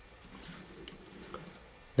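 Quiet pause with low room tone and a few faint small clicks of hand handling.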